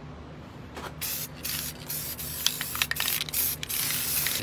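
Aerosol spray-paint can hissing in a run of short bursts with brief breaks, starting about a second in.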